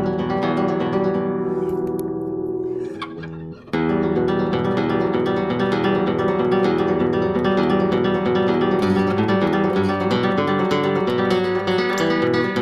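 Nylon-string classical guitar played fingerstyle, plucked with the bare fingers and no pick. A chord rings and fades over the first three seconds or so; then a continuous, grooving line of single notes and chords begins and gets busier toward the end.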